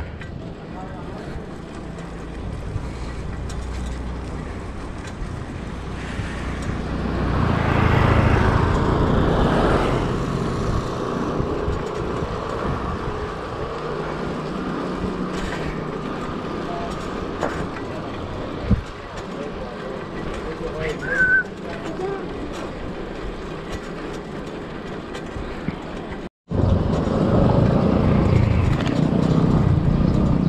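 Riding noise from a bicycle on a rough village road: wind buffeting the microphone and tyre rumble, louder for a few seconds about eight seconds in. There is a sudden brief break in the sound near the end.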